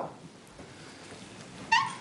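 Low room noise of a meeting chamber as people sit down, with one short, high-pitched squeak near the end, typical of an office chair taking someone's weight.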